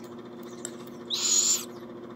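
Barred owl nestling giving one raspy, hissing begging call while being fed, about a second in and lasting about half a second, over a steady low hum.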